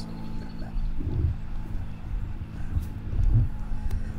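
Low rumbling noise on a handheld microphone, swelling about a second in and again near the end, over a steady electrical hum.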